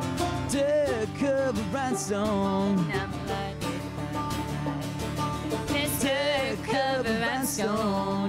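Acoustic pop-country trio playing live: a woman singing lead over strummed acoustic guitar and picked banjo. Sung phrases come from about half a second to three seconds in and again from about six seconds, with only the instruments between.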